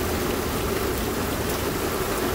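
Heavy rain pouring down steadily onto a waterlogged lawn and concrete walk.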